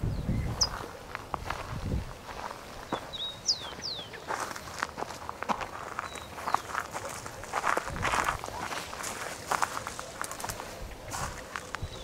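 Footsteps walking through dry scrub, with irregular crackles and rustles of brush and twigs. A few short, high falling whistles sound about half a second in and again around three and a half seconds in.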